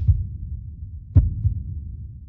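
Low, heartbeat-like throbbing pulse of a suspense score, with one sharper thump about a second in.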